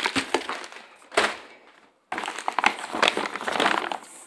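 Plastic bags wrapped around frozen seafood crinkling and crackling as they are handled, in two main spells of rustling with a brief pause about two seconds in.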